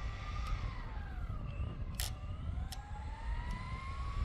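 Electric motor and gear whine of a Tamiya TT02 radio-controlled car, falling in pitch as the car slows for the turn and then rising steadily as it speeds back up. A short sharp click about two seconds in.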